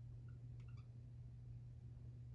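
Faint squeaks of a dry-erase marker writing on a whiteboard, a few short ones in the first second, over a steady low hum.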